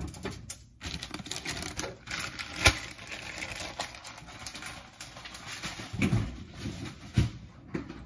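Cheese being grated on a stainless steel box grater: quick rasping strokes of the block against the metal blades, with handling noise and a plastic zip-top bag being rustled later on. A single sharp knock, the loudest sound, comes a little under three seconds in.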